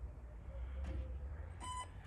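A short electronic beep about one and a half seconds in, over a low wind rumble on the microphone.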